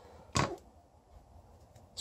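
A single short knock of a steel-handled folding knife being laid down on a wooden tabletop, about half a second in.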